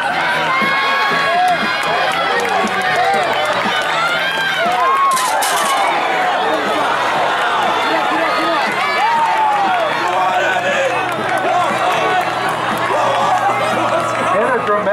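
Crowd of spectators yelling and cheering on the hurdlers in the home straight, many voices overlapping. A short burst of hiss comes about five seconds in.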